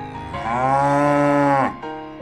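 A cow mooing once, one long call of about a second and a half that bends up slightly and drops away at the end.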